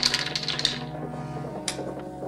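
Checkers clacking on a wooden board: a quick run of clicks in the first half-second or so, then a single click about a second later, over soft background music.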